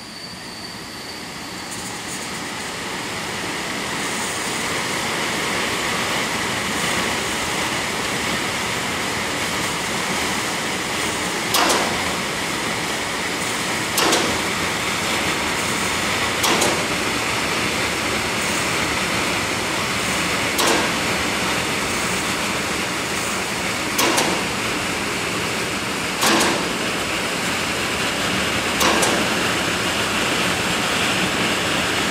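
Electric blower of a homemade tornado-vortex rig running up to speed: a steady rush of air with a faint whine that builds over the first few seconds, then holds. From about twelve seconds in, short sharp knocks come every two to four seconds.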